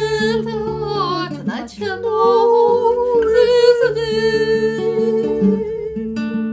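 Women singing a slow melody in long held notes with a slide down about a second and a half in, accompanied by an acoustic guitar.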